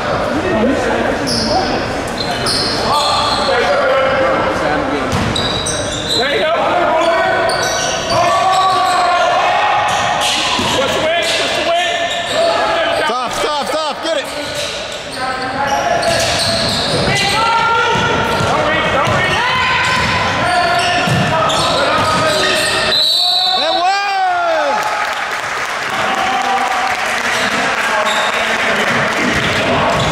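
Basketball bouncing on an indoor court during play, with players' indistinct shouts and calls echoing in a large gym.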